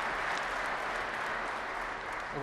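Large audience applauding steadily, a dense even clapping from many hands.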